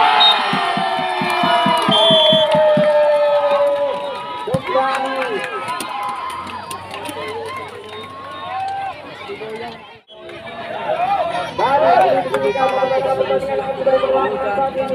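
Crowd of spectators cheering and shouting at a volleyball match, loud at once and fading over the next few seconds, with a quick run of low knocks, about five a second, under it at first. After a brief break near the end, the crowd shouting swells again.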